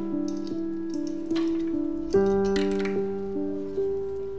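Slow instrumental music, most likely a piano, playing held notes and chords that each start sharply and fade away before the next.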